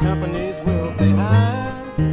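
Country/bluegrass instrumental break: upright double bass plucked in a steady line of low notes, a few to the second, under a higher lead instrument whose notes slide in pitch.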